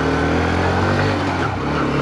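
Honda CB125F's single-cylinder four-stroke engine running steadily as the motorcycle is ridden, with a small dip in level about a second and a half in.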